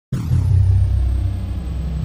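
A deep rumble sound effect for an animated logo intro: it starts suddenly and holds steady, with a faint high whine falling away at the start.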